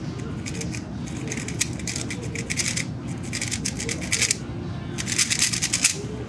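Rapid plastic clicking and clacking of a magnetic 3x3 speedcube, the MoYu HuaMeng YS3M Valkor MagLev, as its layers are turned quickly by hand, in several quick bursts.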